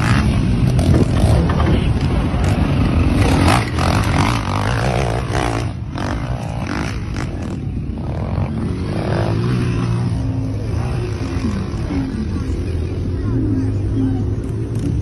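Volkswagen Amarok's V6 turbodiesel engine working under load as the pickup climbs a steep slope, a steady low drone that varies in pitch, with people's voices mixed in.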